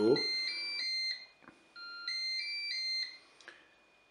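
Moulinex Cookeo multicooker playing its electronic start-up melody as it is switched on: two short phrases of clear beeping notes, a second or so apart.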